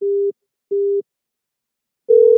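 Two short, low telephone beeps from a softphone, each about a third of a second long and half a second apart, the tone of a call that has just been cut off.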